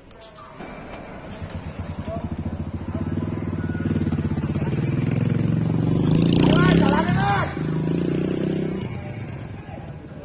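A motorcycle engine running close by, growing louder to a peak about two-thirds of the way through, then fading away. Voices call out briefly at its loudest point.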